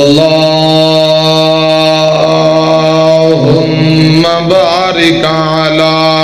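A man chanting Arabic devotional recitation in melodic qari style. He holds one long steady note, then turns through quick wavering ornaments about four to five seconds in before settling on another held note.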